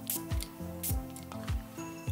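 Two quick spritzes from a perfume bottle's atomizer, a short hiss each, about a second apart, over background music with a steady beat.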